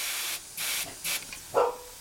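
Three short blasts of compressed air hissing from a trigger inflator gun into a tubeless fat-bike tyre with its valve core out, topping it up to about 20 psi to keep the bead seated. The first blast is the longest, the next two shorter.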